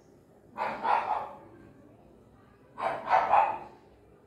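A dog barking in two short bursts of two or three quick barks each, about two seconds apart.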